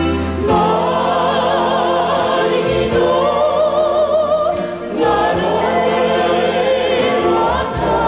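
A mixed choir singing a slow song in held, wavering notes with vibrato, over a steady low accompaniment, the phrases changing every two to three seconds.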